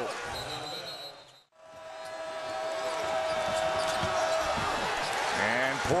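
College basketball arena crowd noise with the sound of play on the hardwood court. The sound drops out briefly at an edit about a second and a half in, then the crowd noise builds back up, with a steady held tone for a couple of seconds.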